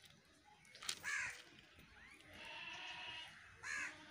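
Faint animal calls in the background: two short calls, about a second in and near the end, with a fainter drawn-out call between them.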